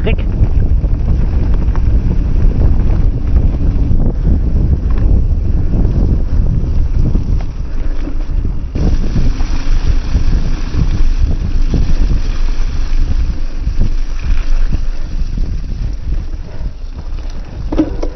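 Wind rushing over an action camera's microphone as an e-mountain bike rolls along a muddy forest track, with the tyres and bike rattling over the ground. The hiss grows brighter about halfway through.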